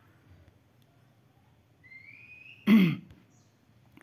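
A man clears his throat once, a short loud burst about three quarters of the way through. It is preceded by a faint, thin rising tone lasting about half a second.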